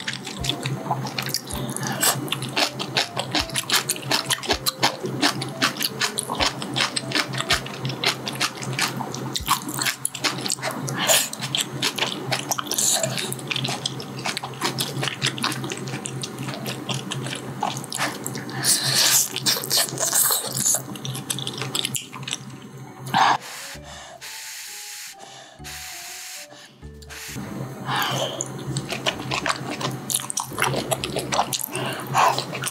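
Close-miked eating of spicy ramen with fish cakes: slurping noodles and broth and chewing, a dense run of quick mouth clicks. The sounds thin out for a few seconds about three-quarters of the way through, then resume.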